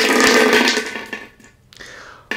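Water poured through a silicone funnel: a rushing, splashing pour that lasts about a second and a half, then trails off.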